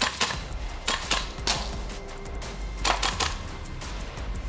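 Several sharp shots from force-on-force training rifles, in quick pairs and short bursts: a cluster at the start, two around a second in, one soon after, and a burst near three seconds. Background music plays underneath.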